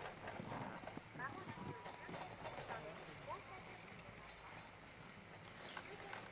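Faint, distant voices over low outdoor background sound, with a few light knocks and short whistle-like glides.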